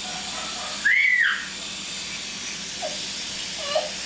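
Water spraying from a garden hose nozzle onto a patio, a steady hiss, with a toddler's short high squeal about a second in that rises and falls in pitch.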